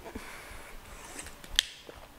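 Quiet room with small handling clicks from a metal water bottle as it is drunk from and lowered, the sharpest click about one and a half seconds in and a fainter one just after.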